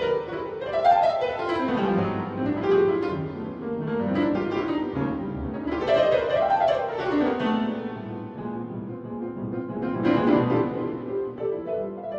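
Acoustic piano playing flowing runs that sweep down and back up several times over held low notes.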